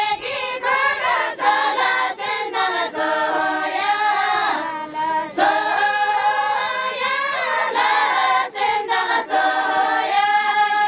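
A group of women singing a traditional folk song together, unaccompanied, their voices sustained in long held phrases.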